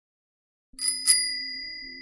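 Bicycle bell rung twice in quick succession: two bright dings that ring on and slowly fade.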